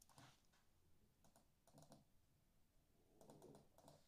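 Faint keystrokes on a computer keyboard: a handful of separate key presses in small clusters, typing digits into a calculator.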